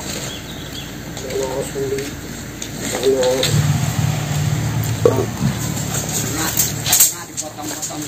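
Men talking in short phrases. A low, steady engine hum comes in about halfway through and cuts off about a second before the end.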